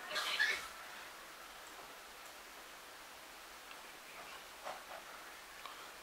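Quiet room tone with a low, even hiss. There is a short soft rustle at the start and a few faint ticks near the end.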